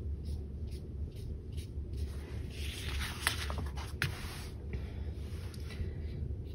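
A paintbrush dragging acrylic paint across the painting in repeated short strokes: faint, irregular scratchy brushing, busiest about halfway through.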